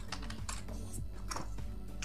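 A few keystrokes on a computer keyboard, typing a short word, over soft background music.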